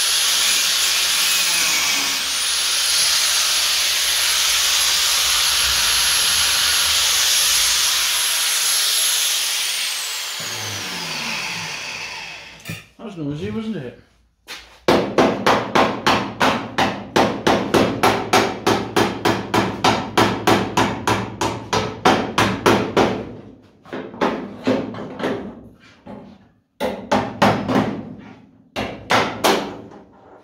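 Angle grinder running on steel with a steady high whine that dips briefly about two seconds in, then winds down and stops about eleven seconds in. After a short pause comes a fast, even run of ringing hammer blows on metal, about four a second, turning slower and irregular for the last several seconds.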